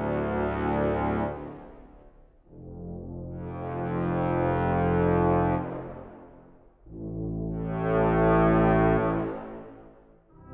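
Sampled brass ensemble from Spitfire Audio Originals Epic Brass, long-note patch, playing sustained chords voiced in octaves. It plays three swells, each growing louder and then fading away as the dynamics slider is ridden.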